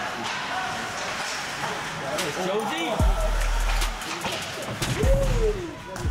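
Background music with a voice, where deep booming bass notes that drop in pitch come in about halfway and repeat.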